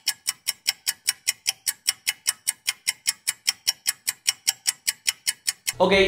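A clock-like ticking sound effect: fast, even ticks at about six a second, with no room sound behind them. It cuts in and out abruptly, filling the wait while something is looked up.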